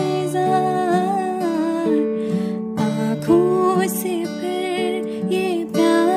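A young woman singing with a wavering, held melody while accompanying herself on acoustic guitar, the guitar's notes ringing on beneath the voice. Her voice breaks off briefly about halfway through, then comes back in.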